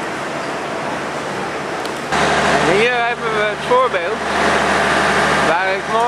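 A steady rushing noise gives way, about two seconds in, to a steady low engine hum with people talking over it.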